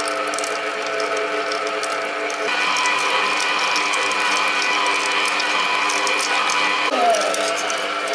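STARWIND SPM7169 planetary stand mixer running on low speed, its motor and metal gears whining steadily as the dough hook kneads bread dough. A higher whine comes in about two and a half seconds in and drops away again about seven seconds in.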